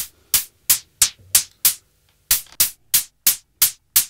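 Behringer Pro-1 analog synthesizer playing a closed hi-hat sound made from its noise source: short, bright hits about three a second, with a brief gap about two seconds in.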